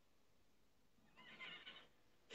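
Near silence, with one faint, short sound a little past the middle.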